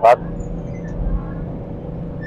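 Steady hum of nearby city road traffic, with a low rumble swelling briefly about a second in as a vehicle passes.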